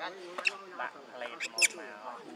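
Young macaque squealing: one short high-pitched squeal about half a second in and two more close together near the end, over lower wavering voice sounds.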